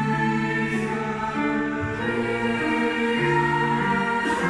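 Youth choir singing in several parts, slow held chords that move to new notes every second or so.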